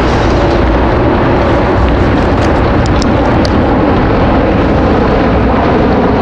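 Steady low drone of distant engine noise with a rumble, unchanging throughout, with a few faint high ticks in the middle.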